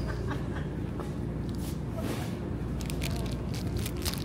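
Steady low hum of the store's background, with scattered faint crackles of plastic packaging as a soft, plastic-wrapped squeeze bottle of mayonnaise is handled and squeezed.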